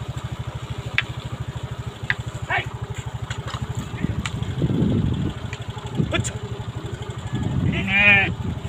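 A flock of sheep bleating as it passes close by, with several calls and the loudest near the end, over the steady pulsing of an idling motorcycle engine.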